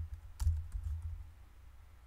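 A few computer keyboard keystrokes clicking about half a second to a second in.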